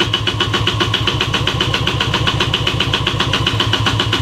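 A Honda NSR 125 R two-stroke being cranked on its electric starter: a steady, rapid, even pulsing that goes on without the engine catching, after the bike has stood unused for months.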